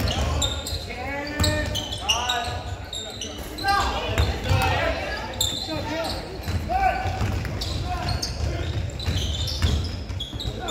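Basketball being dribbled on a hardwood gym floor, with repeated thumps, under players and spectators calling out, all echoing in a large gym.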